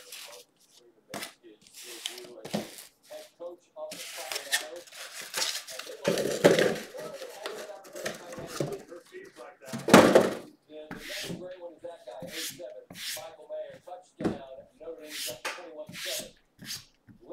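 Indistinct talking, with cardboard boxes being handled: a scraping, rustling stretch from about four to seven seconds in and a loud thump about ten seconds in.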